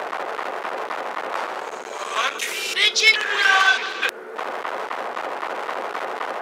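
A speed-altered cartoon character voice calling out briefly in the middle, over a steady hiss.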